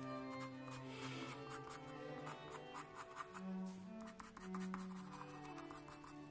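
Soft background music with long held notes, over the repeated short strokes of a 4B graphite pencil shading on sketch paper.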